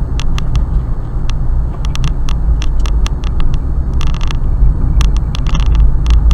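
Steady road and engine rumble inside a moving car, recorded by a Thinkware X500 dashcam, broken by frequent irregular electrical crackles and a longer burst of crackling about four seconds in. The driver suspects a bad connection in the dashcam's wiring.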